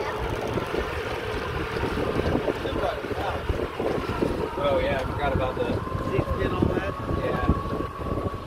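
Wind buffeting the microphone aboard a pontoon boat under way on choppy water, over the steady running of the boat's motor and water rushing past the hull.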